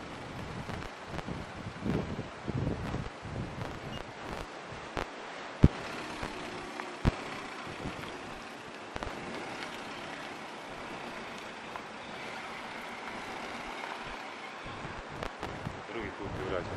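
Wind buffeting the microphone in gusts, strongest in the first five seconds, with two sharp knocks about five and a half and seven seconds in.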